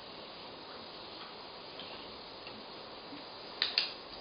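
Two sharp clicks in quick succession near the end, typical of a dog-training clicker being pressed and released to mark the dog's behaviour.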